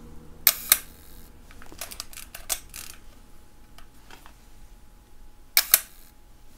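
Leica M3 focal-plane shutter fired twice: each release is a pair of sharp clicks about a fifth of a second apart as the curtains open and close. In between, about two seconds in, comes a short run of lighter clicks from the single-stroke advance lever being wound to re-cock it.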